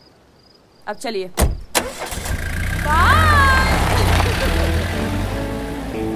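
Two sharp knocks, then a car engine starts and runs loudly with a deep rumble, with a short high squeal that rises and falls about three seconds in. Music comes in near the end.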